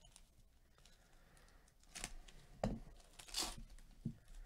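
Foil wrapper of a trading-card pack torn open by hand. It is quiet at first, then come a few short rips and crinkles in the second half. The longest and highest rip comes about three and a half seconds in, with a dull knock just before it.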